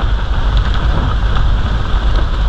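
Jeep driving on a rough, unpaved mountain road: a steady low rumble of engine and tyres over gravel and rock, with a few faint rattles.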